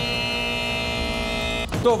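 TV show theme music from the logo ident, ending on a long held chord of several steady tones that cuts off suddenly near the end, just before a man starts speaking.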